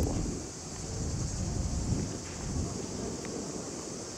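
Outdoor ambience with wind rumbling unevenly on the microphone under a steady, high insect drone.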